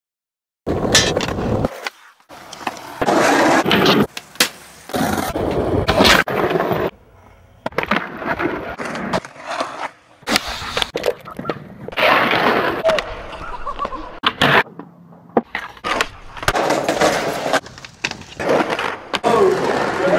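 Skateboards rolling on stone and concrete paving, with the clacks of boards popped and landed, coming in short, abrupt sections.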